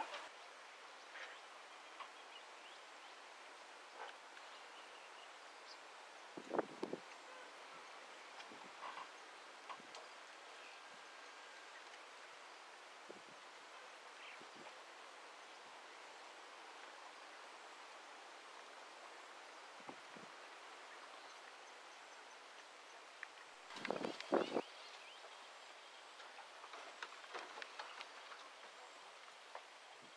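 Quiet outdoor ambience: a faint steady hiss broken by a few short sounds, the loudest a brief cluster about twenty-four seconds in and another about six seconds in.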